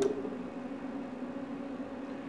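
A photopolymer processor's vacuum is switched off, with a click as the switch is pressed. The machine's steady tone cuts out, leaving only a faint, steady low hum.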